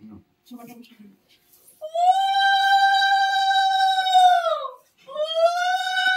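Conch shell (shankha) blown in two long, steady blasts during the puja's aarti. The first lasts about three seconds and sags in pitch as it dies away; the second starts about five seconds in and carries on.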